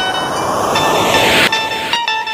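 A loud rising noise sweep over held synth tones: a DJ remix transition effect bridging two sections of the track. It steps up in level about three-quarters of a second in and drops back about halfway through the second second.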